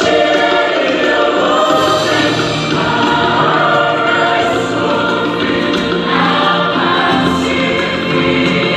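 A women's choir singing a chorus, many voices together in harmony.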